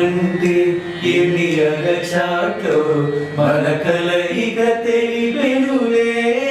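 A small group of men and a woman singing together without instruments, a slow melody with notes held for about a second each.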